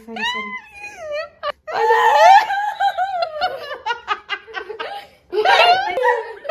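A woman laughing hard: a long, high-pitched peal that breaks into a run of quick, short laughing pulses, then a second loud burst of laughter near the end.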